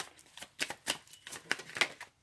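Deck of tarot cards being shuffled by hand: a quick, irregular run of card flicks and slaps.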